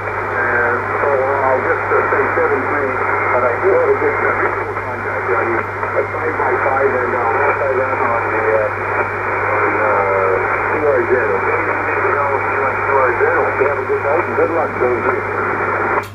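A distant station's voice coming over an Icom IC-7200 transceiver's speaker on 20-metre single sideband: thin, cut off in the highs and mixed with hiss and strong splatter from a nearby signal. A steady low hum runs underneath.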